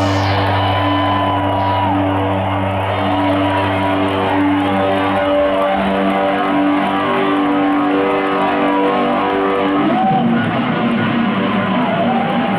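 Live rock band playing a long, sustained passage led by ringing electric guitar over held chords. The deep bass note underneath drops out about five seconds in, and the sound shifts near the end.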